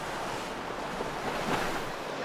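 Water rushing and churning in a passing powerboat's wake, with wind on the microphone.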